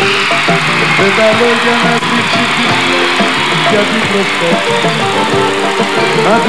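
Live Greek laïko band playing an instrumental passage: plucked-string and keyboard melody with a jingled frame drum, under a noisy wash of crowd voices that fades near the end.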